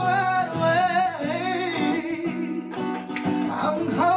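A man singing a slow pop song with held, wavering notes, accompanied by an acoustic guitar.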